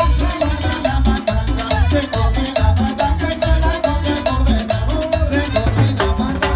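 Live cumbia band playing a dance number: drum kit and bass keeping a steady beat under a melody line.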